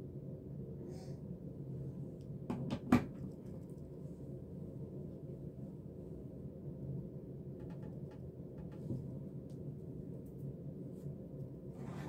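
Hot glue gun set down on a table: a couple of sharp knocks about three seconds in, over a steady low background hum, with a few faint ticks later.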